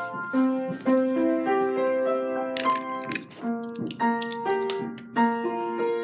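Piano music: a melody of struck notes, each held and overlapping the next.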